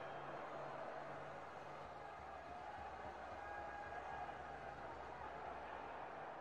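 Faint steady outdoor background noise from an open cricket ground, with a low hum that grows louder about two seconds in.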